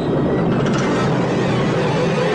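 A loud, steady, continuous rumbling roar from a horror film's soundtrack score and effects, with no clear beat.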